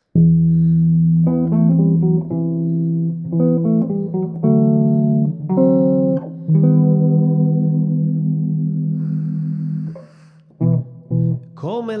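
Solo headless electric bass played through a Markbass combo amp and effects pedals: a slow intro line of long, sustained notes changing about every second, the last held for about three seconds before it fades. A few short plucked notes follow, and singing begins at the very end.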